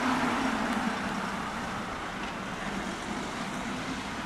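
A fire engine's diesel engine running steadily, a little louder in the first second.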